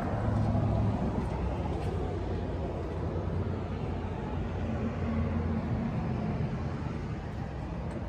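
Engine of a 1935 Ford sedan idling steadily, heard close up at the open engine bay.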